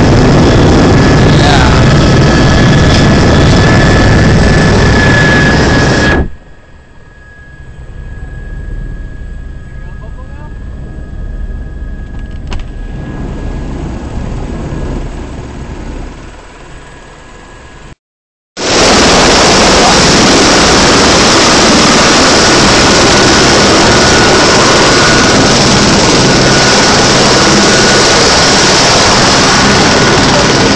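A running helicopter: loud turbine and rotor noise with a steady whine, which drops sharply about six seconds in and stays muffled. After a brief dropout, the loud rotor noise returns with heavy wind noise from the downwash.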